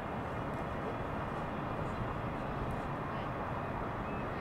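Steady outdoor city ambience: a continuous, even hum of distant traffic.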